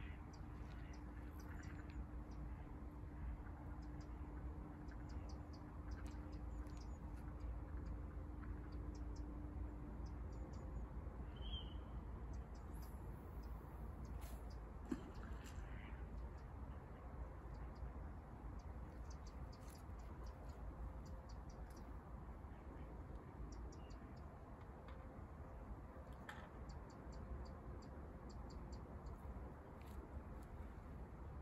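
Quiet outdoor ambience: a low steady rumble with scattered faint bird chirps and short calls, one clearer call a little past ten seconds in. A faint steady hum fades out about ten seconds in.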